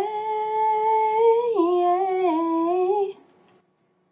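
A woman singing unaccompanied, holding one long note on the word "pray". The note steps down to a lower pitch about halfway through, wavers, and ends about three seconds in.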